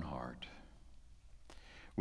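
A voice trails off with a breathy tail in the first half-second, then quiet room tone with one faint click about one and a half seconds in.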